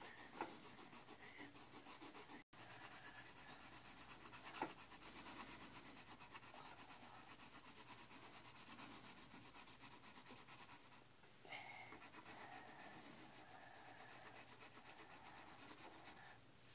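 Colored pencil shading back and forth on paper laid on a wooden table: a faint, even scratchy rubbing made of rapid repeated strokes. A couple of light knocks come about half a second in and again near five seconds.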